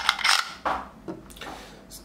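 Hard plastic parts of a 3D-printed spinning top clicking and rattling as the twisted coil plunger is lifted back up by its knob. There are a few short clicks, the loudest right at the start.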